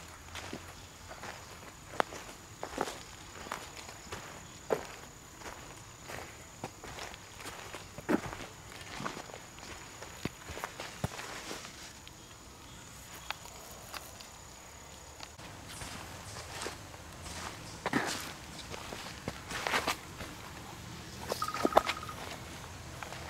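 Footsteps walking over dry forest-floor litter of pine needles and fallen leaves: irregular crunches and rustles underfoot.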